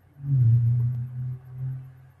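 A man's long, low hesitation hum, a closed-mouth "mmm" held on one pitch for most of two seconds, swelling and fading a little, as he pauses to find his words.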